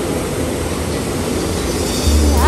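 Steady rushing of the FlowRider surf simulator's fast sheet of water pouring up the padded ride surface, a continuous hiss of spray and flowing water.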